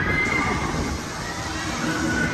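Children shrieking on a spinning fairground ride: high, drawn-out cries that slide up and down in pitch.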